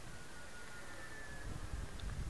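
Faint, thin whine of a distant radio-controlled T-28 Trojan model plane's motor and propeller in flight. The whine wavers slightly and fades about a second and a half in, over a low rumble on the microphone.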